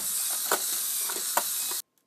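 An edited-in transition sound effect: a steady hiss with a few sharp clicks in it, which cuts off suddenly near the end and leaves silence.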